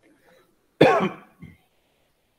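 A person clearing their throat: one loud, short burst about a second in, then a brief quieter second catch.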